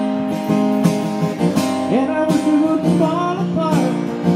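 Acoustic guitar strummed in a steady rhythm, with a man's voice singing a drawn-out line over it from about halfway in.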